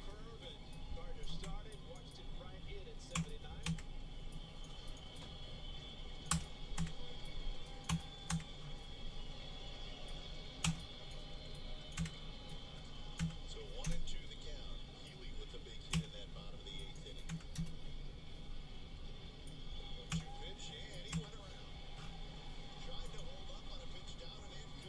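Computer keyboard tapped in short, irregular runs of clicks, a stroke or two a second, over faint steady background noise with a thin high whine.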